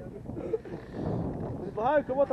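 Quiet outdoor background with low, indistinct voices; a man starts talking clearly near the end.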